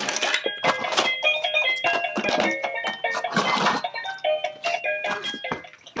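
A children's electronic toy playing a simple beeping jingle of short stepping notes, mixed with plastic toys clattering as they are rummaged through.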